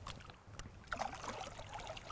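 Light splashing and trickling of water at the side of a boat as a smallmouth bass is let go from the hand into the lake, with a couple of small knocks first.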